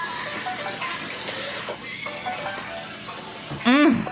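Steady hissing noise under faint background music. Near the end a person's voice gives one short sliding vocal sound.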